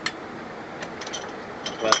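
A sharp metallic click followed by a few light ticks as a VVT cam timing gear is handled and turned by hand in a bench vise.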